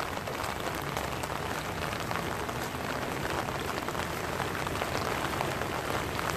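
Stormwater gushing out of a drain outlet into a flooded concrete channel while heavy rain falls, making a steady rushing hiss.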